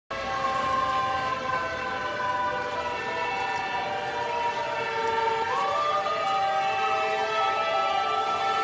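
Several emergency vehicle sirens sounding together, their overlapping tones held and slowly shifting in pitch.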